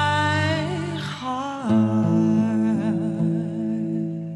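Closing wordless vocal line with vibrato over a sustained, ringing acoustic guitar chord; the voice glides down about a second and a half in and settles on a lower held note.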